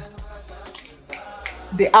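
A few finger snaps while searching for a word.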